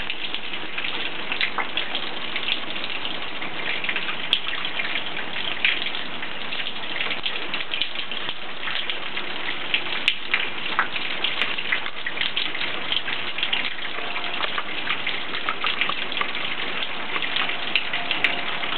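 Steady rain falling, a constant hiss dotted with many small drop hits on the pavement and nearby surfaces.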